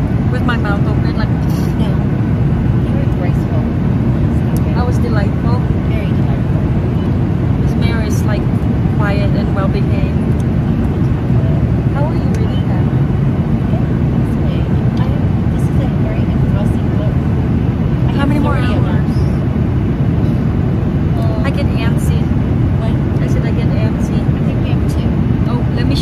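Steady cabin noise of an airliner in flight: an even, loud low rumble of engines and airflow, with faint passenger voices over it.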